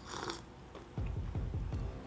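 A short slurping sip of hot tea from a mug, then, about a second in, a run of low gulping sounds as it is swallowed.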